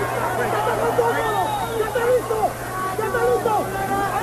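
Arena crowd at a boxing match: many voices shouting and calling over one another, over a steady low broadcast hum.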